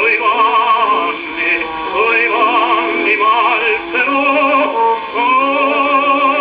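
Operatic baritone singing with orchestra, played from an acoustically recorded 78 rpm disc on a 1918 wind-up Columbia console gramophone. The voice has a wide vibrato and sings in phrases with brief breaths between them. The sound has no high treble.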